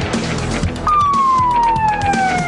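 An emergency-vehicle siren gives one long falling wail, starting about a second in and sliding steadily down in pitch, over background music.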